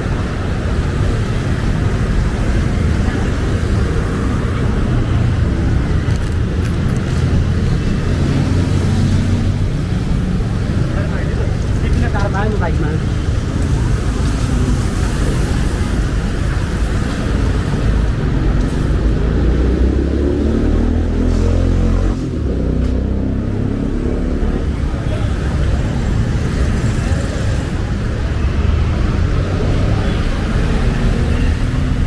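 Street traffic on a busy city road: cars and motor scooters running past in a steady rumble, with passers-by talking briefly now and then, around the middle.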